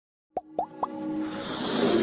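Intro sound effects for an animated logo: three quick pops, each sweeping upward in pitch and a little higher than the last, then a swelling whoosh that builds louder toward the end.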